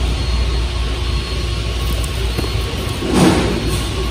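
Steady low hum of a large store's interior ambience, with a brief rustle and knock about three seconds in as gel knee pads are handled in a display bin.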